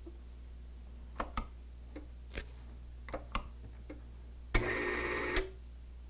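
A few light clicks, then the Take-A-Label TAL-3100T tamp label applicator's label feed runs for about a second, advancing the web to dispense one label, starting and stopping with a click. It is a test dispense to check where the label now stops on the peel plate after the label-advance setting was turned up.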